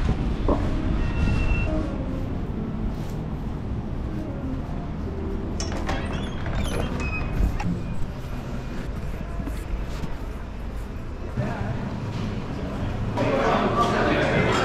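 Changing ambience: a low rumble of wind on the microphone with scattered faint tones and clicks, then the steady murmur of many voices chatting in a crowded bar, starting about a second before the end.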